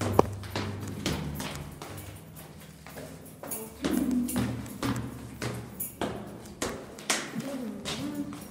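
Footsteps on stairwell steps with knocks from the phone being handled: a string of irregular taps and thuds over a low hum.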